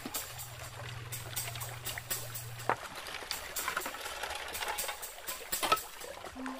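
A metal digging tool striking and scraping stream gravel and stones, a string of sharp clinks and knocks, over running stream water.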